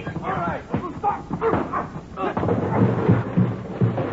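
Radio-drama sound effects of a brawl: men shouting and struggling, a sharp crash about two seconds in, then heavy low thuds.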